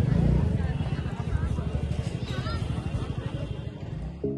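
A motor vehicle's engine running with a fast, even pulse, gradually fading, with faint voices in the background.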